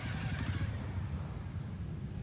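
A small motorcycle that has just gone by close to the microphone, its hiss fading out in the first half second, over a steady low rumble.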